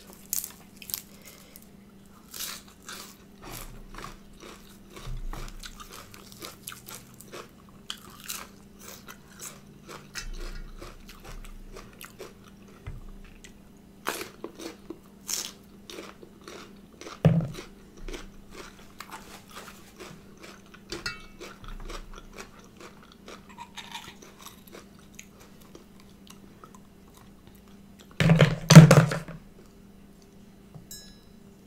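Close-miked biting and chewing of raw green herbs and vegetables: repeated short wet crunches, with a louder burst of crunching near the end. A faint steady hum runs underneath.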